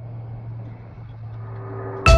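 Car driving, heard from inside the cabin: a steady low engine and road hum.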